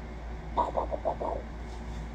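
A man's voice from inside a full-head Mandalorian helmet: a quick run of about six short pitched syllables lasting just under a second, starting about half a second in.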